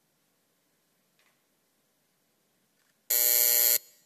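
Near silence, then about three seconds in a loud electronic buzzer sounds once for under a second, signalling the end of a timed minute of silence.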